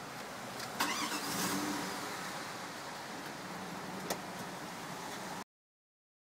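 A car engine starting about a second in, then running steadily, with a sharp click a few seconds later. The sound cuts off suddenly near the end.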